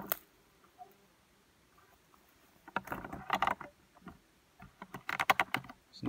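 Scattered knocks, clicks and rustles from work with the shelter's wooden poles, in two clusters: one about three seconds in and a run of short clicks near the end.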